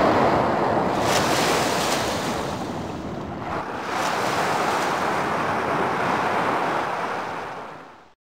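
Small waves washing up onto a sandy beach, in two surges, the second starting about four seconds in, then fading out at the end.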